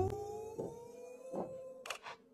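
Cartoon soundtrack sound effect: a held tone that slowly rises in pitch while fading, with two soft knocks and a short hiss at the end.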